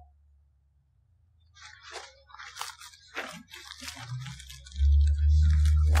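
Dry leaf litter crunching and crackling in irregular bursts, like footsteps through fallen leaves. A loud low rumble sets in near the end.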